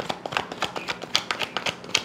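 Tarot cards being shuffled by hand, a quick, uneven patter of card clicks and slaps, several a second.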